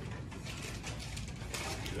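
Pencils scratching on paper, with irregular small clicks and rustles from students' desks, busier near the end.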